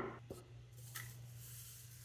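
Faint handling sounds: a light click about a second in, then a soft hiss as powder is poured from a plastic blender jar into a metal mesh sieve, over a steady low hum.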